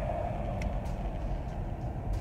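Steady low rumble of car cabin noise, engine and road sound heard from inside the car.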